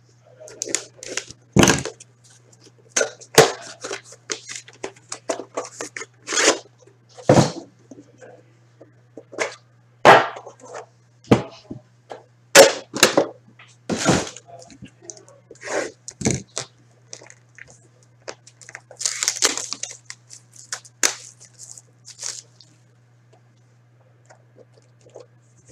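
Hockey card box being cut open and unpacked by hand: cardboard scraping, tearing and crinkling, broken by a series of sharp knocks and clacks as the box, its case and lid are handled and set down. A low steady hum runs underneath.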